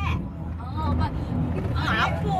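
Steady low rumble of road and engine noise inside a moving car's cabin, with brief snatches of voices.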